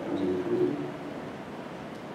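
A man's voice holding a low, steady hesitation sound, like a drawn-out 'um', lasting about half a second near the start, then fading into quieter room sound.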